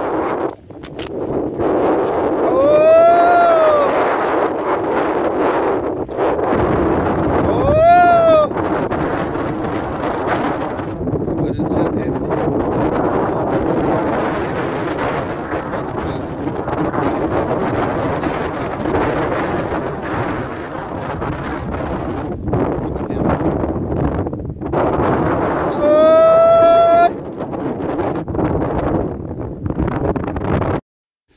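Wind buffeting the microphone, with a man giving three long shouted cattle-herding calls ("aô") about three seconds in, about eight seconds in, and near the end, the last one held longer.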